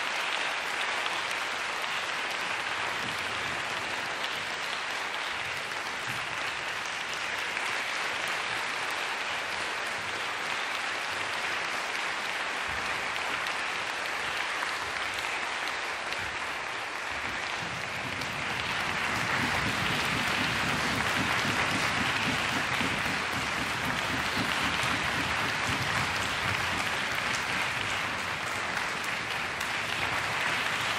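Concert-hall audience applauding steadily, with the clapping growing louder about two-thirds of the way through.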